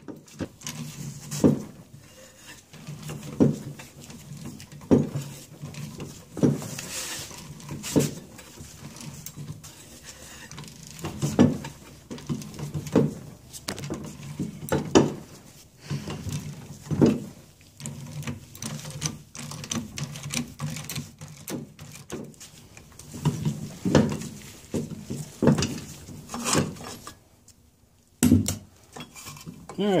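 Hand ratchet turning the bolt of a gearcase driveshaft puller: metal clicks and sharp knocks come every second or two over a low hum, as the puller draws the part out of the outboard lower unit's housing.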